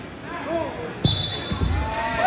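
Shouts from the gym, then about a second in a thud on the wrestling mat and one short, steady blast of the referee's whistle stopping the action, with more low thumping of bodies on the mat under it.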